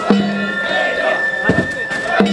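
Danjiri float music (narimono): two strikes of the drum, each ringing briefly, under one long held high flute note, with crowd voices around it.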